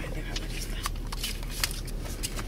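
Irregular crackling ticks of wind-blown sand and grit striking the car's windshield and body in a dust storm, heard from inside the car over a steady low hum.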